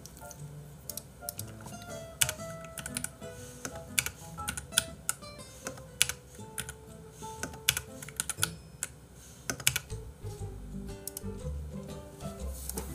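Typing on a computer keyboard: irregular runs of key clicks, over soft background music.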